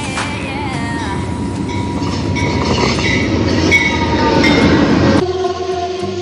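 Amtrak passenger train pulling into a station, its rumble and wheel noise growing louder, with high squealing tones over it. The sound cuts off suddenly about five seconds in and steady background music takes over.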